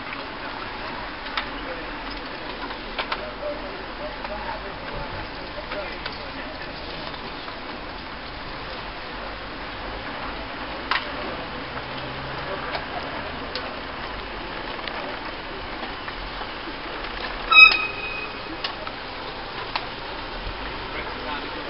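A large group of cyclists riding past on a wet road: voices chattering, a steady tyre hiss and scattered clicks. A brief loud sound stands out about three-quarters of the way in.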